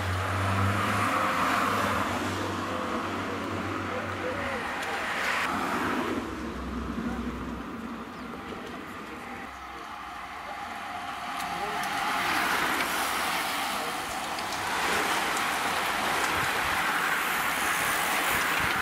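A bunch of road-racing bicycles passing close by in several swells, a rushing of tyres and air that rises and fades, with voices in the background.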